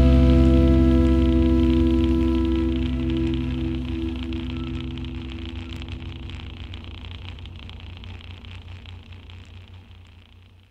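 A jazz band's final chord ringing out: sustained guitar and bass notes hold and die away slowly, fading out almost completely by the end.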